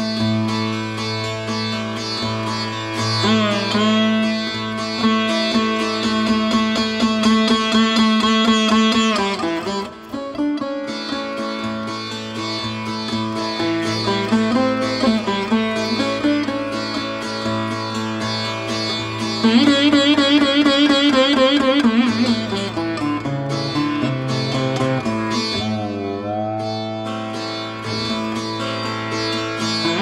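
Surbahar, the bass sitar, played solo in Raag Jog: deep plucked notes ringing on over the sympathetic strings, with slides that bend the pitch. Two busier, louder stretches of rapid strokes come early on and again past the middle, and there is a slow downward-and-back swoop near the end.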